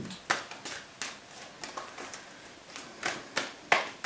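Tarot cards being handled on a wooden table: a string of about a dozen light, irregular clicks and taps, the sharpest near the start and just before the end.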